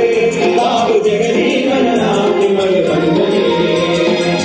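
A song sung by a group of voices over music, played loud through the hall's loudspeakers, with a percussion beat about twice a second.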